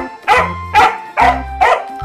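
Askal (Filipino mixed-breed dog) barking excitedly in quick short barks, about five in two seconds: demanding barks of a dog eager to go outside. Background music with a steady bass runs underneath.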